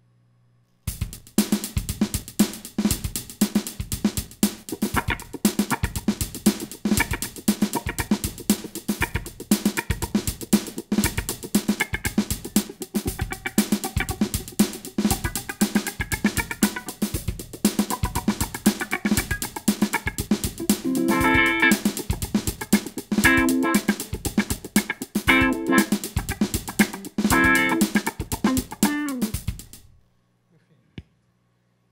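Electric guitar through a wah pedal playing a funk rhythm. It starts about a second in with fast muted-string scratches (ghost notes) under sweeping wah, and from the middle on, full chord stabs land about every two seconds. The playing stops suddenly at the end.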